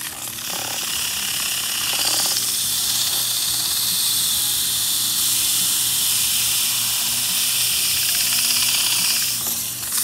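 Fedders air-conditioner fan motor running with a steady hum while sandpaper is held against its spinning shaft, giving a continuous scratchy hiss as the surface rust is sanded off.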